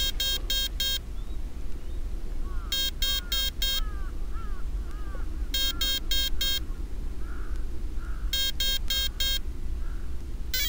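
Electronic speed controller of an RC helicopter beeping in stick-programming mode: groups of four short beeps, repeated about every three seconds, signalling programming item number 4 while the setting for that item is chosen with the throttle stick.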